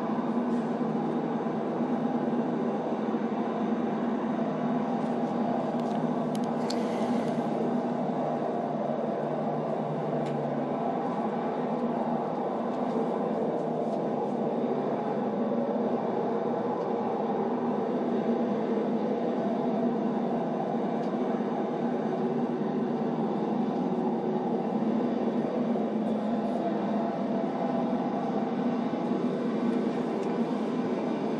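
Steady low rumble and hum of road-traffic-like noise, with no voices, played back from a recorded phone call; a short hiss rises over it about seven seconds in.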